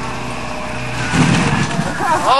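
School bus engine working hard under load as the bus charges up a steep dirt hill, getting louder and rougher about a second in.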